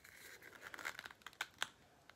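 Faint crinkling and rustling with a few light clicks as hands handle and try to twist open a small container of muscle rub.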